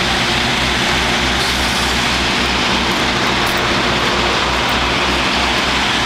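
Heavy trucks' engines running steadily with a low throb about twice a second, under a dense wash of traffic noise.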